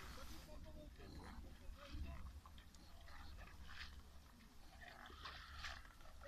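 Near-silent outdoor ambience: a low steady rumble with faint, distant voices.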